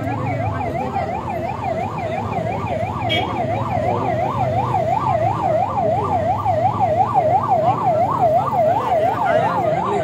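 An emergency-vehicle siren warbling rapidly up and down, about three sweeps a second, growing a little louder in the second half, over the low murmur of a crowd.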